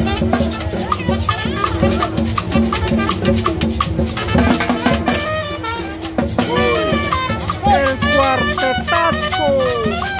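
Live Latin dance music from a small street band. Drums keep a steady beat throughout, and a trumpet plays a melody with sliding notes in the second half.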